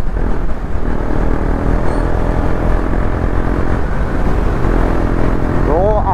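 KTM Duke 250's single-cylinder engine running steadily at highway cruising speed, heard with the rush of wind and road noise from riding at about 70–77 km/h.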